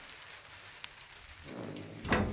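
A light sprinkle of rain falling, heard as a steady faint hiss, with one small click a little before halfway through.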